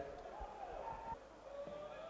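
Faint pitch-side ambience of a football match: distant drawn-out shouts from players, with a few soft low knocks.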